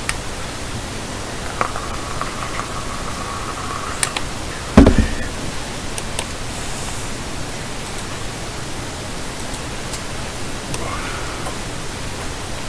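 Ghost-box software (Afterlight Box) playing a steady hiss of static, broken by short clipped fragments: a brief held tone, scattered clicks, and one loud low thump about five seconds in.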